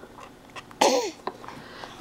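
A baby sneezing once, a short sharp burst about a second in.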